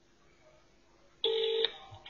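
Near silence, then just past a second in a single short telephone tone sounds on the line for under half a second.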